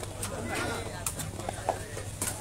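Crowd chatter around a sepak takraw court, with a few short, sharp taps of the takraw ball being kicked.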